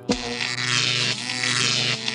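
Cartoon electric-shock sound effect: a loud, crackling electric buzz that starts suddenly and holds steady as a character is zapped by a live power socket.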